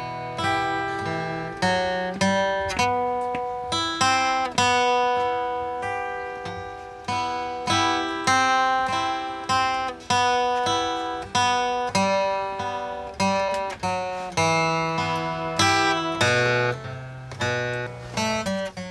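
Steel-string acoustic guitar played by hand, a slow tune of picked single notes and strummed chords, each struck and left to ring and fade. The freshly restrung, repaired guitar is being played to check its tuning.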